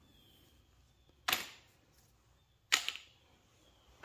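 Two short sharp knocks about a second and a half apart: a small pipe piece and a hand tool set down on paper over a concrete floor.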